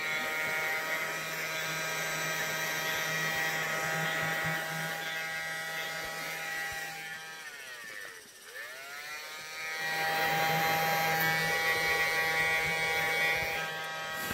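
A small motor buzzing steadily with many even overtones. Its pitch slides down and back up about eight seconds in, as if it slowed briefly and then ran up to speed again.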